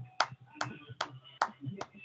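Hands clapping in an even rhythm, about five sharp claps in two seconds, heard through a video-conference call's compressed audio.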